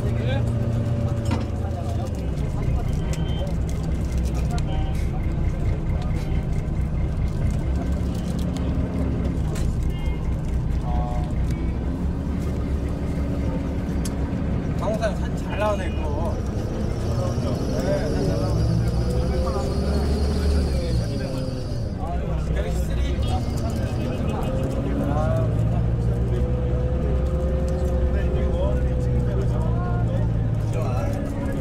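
Steady low engine and road rumble inside a moving bus, with indistinct voices talking over it.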